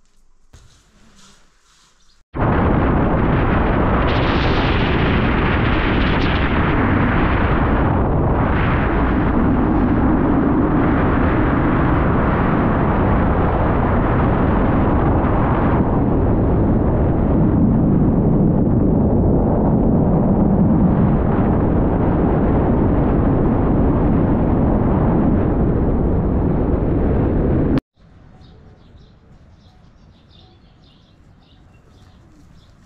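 Loud, steady rush of wind buffeting the microphone, with road noise, while travelling along a paved road at speed. It starts abruptly a couple of seconds in and cuts off suddenly near the end.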